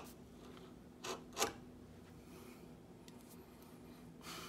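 Freshly honed chisel paring a scrap of walnut: a few short, faint shaving scrapes, the two strongest close together about a second in. The edge is sharp enough to slice the walnut with little effort.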